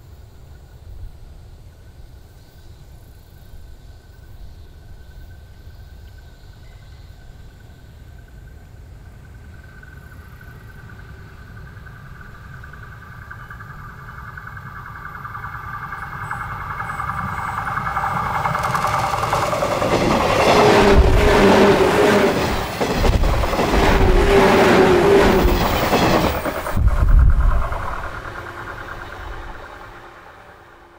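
JNR 113 series electric train approaching along the line, growing steadily louder over about twenty seconds. It passes close by with its wheels clattering over the rail joints, the loudest part, then fades away near the end.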